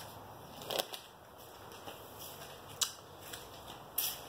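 A few short clicks and rubs from a handheld phone being moved, over quiet room tone; the loudest comes about three-quarters of a second in and another near three seconds.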